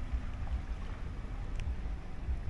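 Wind buffeting the microphone: an uneven low rumble that rises and falls in small gusts.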